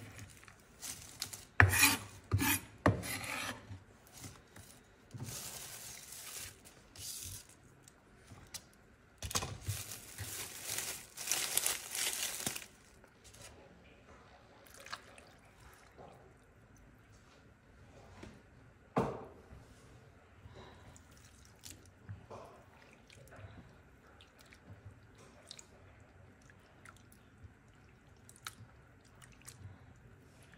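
Kitchen knife chopping snow peas on a bamboo cutting board: a quick run of knocks in the first few seconds. Then come two stretches of scraping and rustling, followed by a mostly quiet spell with small clicks and one sharp knock about two-thirds of the way through.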